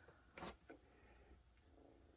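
Near silence: room tone, with two faint, brief noises about half a second in.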